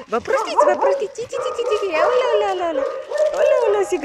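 Excited dogs whining and yipping in greeting, with wavering, sliding cries, mixed with a person's high singsong baby talk.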